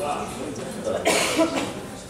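A cough, loud and short, about a second in, amid a person's talk.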